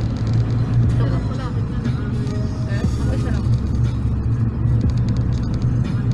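A car's engine and road noise heard from inside the cabin: a steady low drone, with faint voices in the background.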